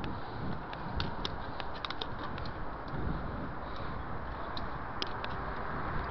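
Riding noise from a moving bicycle: a steady rumble of wind and tyre-on-asphalt noise, with scattered light clicks and rattles from the bike, bunched about a second in and again near five seconds.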